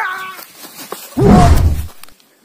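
A man's voice crying out during a staged fist fight. About a second in comes a loud, deep hit sound lasting under a second, with a strained yell over it, and then it cuts off.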